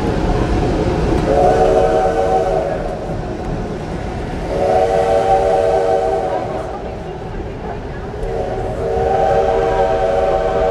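A steam locomotive's whistle blows three blasts, each about two seconds long, the third still sounding at the end. Under them runs the steady low rumble of the train rolling along the track.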